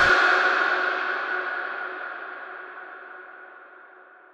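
A ringing, gong-like tone made of several steady pitches, fading out slowly over about four seconds, likely an edited-in sound effect.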